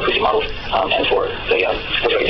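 Speech: a voice talking without pause.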